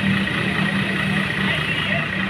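A bus's diesel engine idling steadily with a low, even hum.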